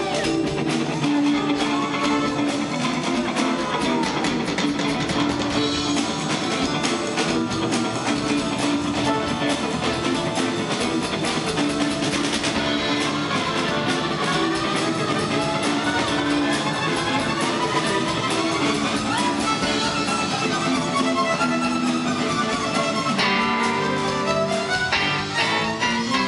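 Live rock band playing an instrumental break on electric guitar, fiddle and drum kit, with sliding notes through the middle and the fiddle bowing near the end.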